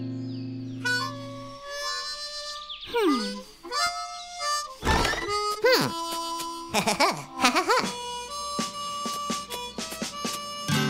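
Cartoon background music with a harmonica-like lead: a held chord fades out in the first second and a half, then short bright notes and several quick pitch swoops up and down.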